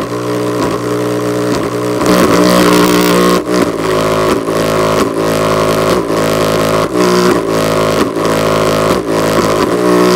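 Bass test track played very loud through a JBL Charge Bluetooth speaker with its passive radiator pumping, the sound heavily driven and buzzing, with deep bass notes that dip and slide in pitch about once a second.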